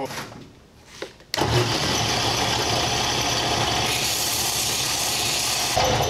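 Delta belt-and-disc sander's electric motor switched on about a second in and running steadily. From about four seconds a steel bolt is held against it, adding a harsh grinding hiss. It is switched off near the end and winds down with falling pitch.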